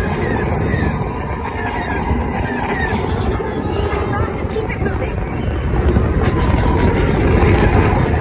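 Indoor roller coaster train running on its track in the dark, a loud steady rumble. A string of short falling chirps sounds over it in the first few seconds.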